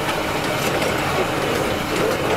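Steel wheels of a small railway wagon rolling along the track, a steady rumble and rattle, with the wagon coasting downhill.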